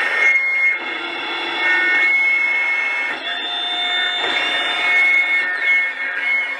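Live harsh-noise music: loud electronic hiss and buzz with steady high-pitched whistling tones that come and go, and almost no bass.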